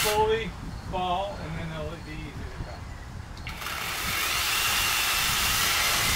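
A handheld power saw starts abruptly about three and a half seconds in and runs at a steady pitch: a hissing motor noise with a faint high whine, as branches are cut in a tree. Faint voices come before it.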